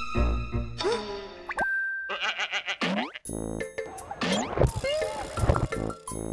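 Comic variety-show background music with a beat for about the first second. It gives way to a run of cartoon boing and swooping pitch-glide sound effects.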